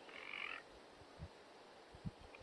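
A single short animal call near the start, over faint background ambience.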